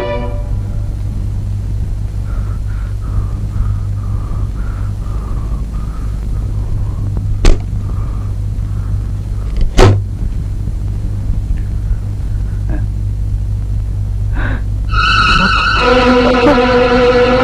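Film soundtrack: a steady low drone with a faint wavering tone above it, broken by two sharp bangs about two seconds apart midway. A held, chant-like musical voice comes in near the end.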